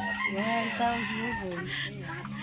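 A rooster crowing, over a low steady hum.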